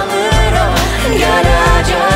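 Christian worship song in Azerbaijani: a voice singing a melody that bends and glides, over a band backing with a steady bass line and drum beats.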